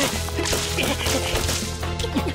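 Cartoon action sound effects: a few sharp whip-like snaps and impacts, as paint blobs splat against the walls, over background action music.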